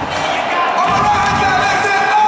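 Arena crowd noise: many voices shouting and cheering at once in a large hall, with some drawn-out calls above the din.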